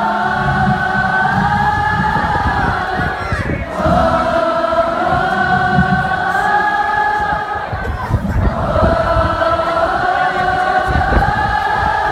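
A large crowd singing along with the singer at the close of a live acoustic song, over acoustic guitar. The singing comes in three long held phrases with short breaks between.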